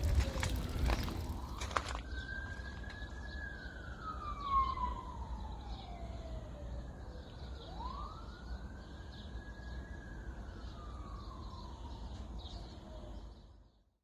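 Faint emergency-vehicle siren wailing in two slow cycles, each rising quickly and then falling over about five seconds, over a low steady rumble. The first two seconds hold water splashing and clicks around the well pipe; the sound stops just before the end.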